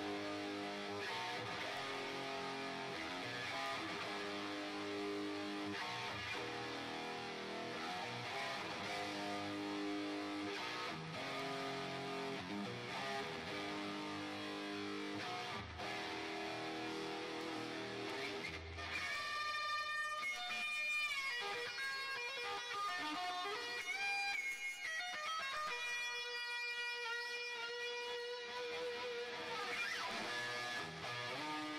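Ibanez Jem 777 electric guitar with DiMarzio Evolution pickups, played through a Fractal Audio AX8 amp modeler. It plays a dense chordal rhythm riff, then about two-thirds of the way through switches to a sparser line of single held lead notes.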